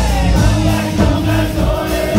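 Rock band playing live at full volume, with electric guitars, bass guitar and a drum kit, and a sung lead vocal.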